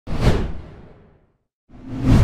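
Whoosh sound effect: a sudden swell loudest about a quarter second in that fades away over the next second. A second whoosh starts to rise near the end.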